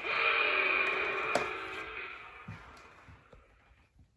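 Little Tikes Chompin' Dino Trike's electronic dinosaur roar played through the toy's small speaker, set off from the handlebar; it starts suddenly, is loudest for the first two seconds, then fades out. A sharp click sounds about a second and a half in.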